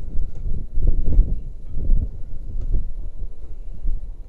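Wind buffeting an action camera's microphone high up on an exposed jump platform: an uneven, gusting low rumble.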